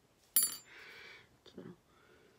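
A sharp tap with a brief high metallic ring about a third of a second in, followed by a short soft rustle and a second, fainter tap with a low thud.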